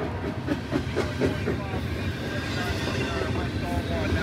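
Double-stack container freight train passing close by: a steady rumble of steel wheels on rail, with clattering and clanking from the well cars, busiest in the first half.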